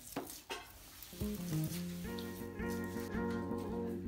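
Background music with held, sustained chords that come in about a second in, over a few faint light clicks at the start.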